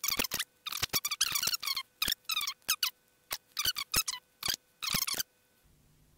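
Marker pen squeaking on paper in a quick run of short, high-pitched strokes as lines are drawn, stopping a little before the end.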